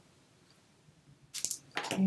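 Near silence, then about a second and a half in a brief, light click and rustle of small craft pieces being picked up from a cutting mat.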